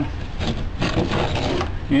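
Hand-handling noise from white PVC pipe and fittings: a few light knocks and rubbing as the assembled pipe frame is moved about, over a steady low hum and hiss.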